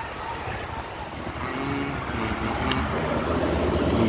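Engine and road noise from a vehicle riding through town traffic, a steady low rumble that grows slowly louder, with a faint voice in the middle.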